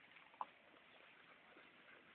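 Near silence, with one faint short tick about half a second in.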